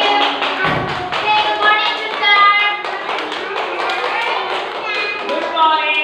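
Young children singing together, with sharp hand claps going along with the song.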